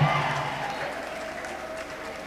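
Congregation applauding, the clapping loudest at the start and dying down gradually.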